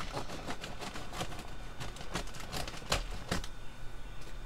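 A paper bag of charcoal briquets being handled: the bag crinkles and rustles, with irregular sharp clicks and crackles.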